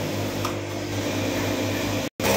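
Singer industrial lockstitch sewing machine running steadily at speed as fabric is fed under the needle, a level mechanical hum.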